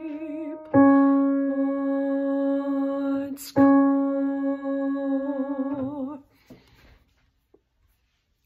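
A woman sings the last long notes of a choir's second voice part, with vibrato at the ends of the notes and a quick breath between the last two. The final note is released about six seconds in.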